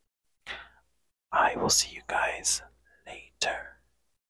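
A man whispering close to the microphone: a few short whispered phrases with sharp s-sounds, then quiet near the end.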